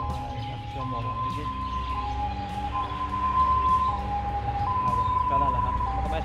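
Two-tone hi-lo siren of an emergency vehicle, switching steadily between a higher and a lower note about once a second.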